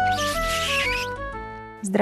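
The closing bars of a TV programme's theme music: sustained melodic notes that fade out, with a high hissing swoosh over the first second.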